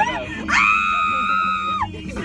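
A woman's long, high-pitched scream, held for over a second and dropping in pitch as it ends, with music playing underneath.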